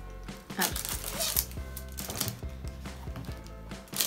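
Soft background music with held notes, with scattered clicks and rustles from plastic packaging being handled as a cellophane-wrapped palette is drawn out of a bag.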